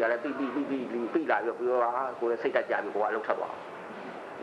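Speech only: a man talking continuously, in the manner of a lecture.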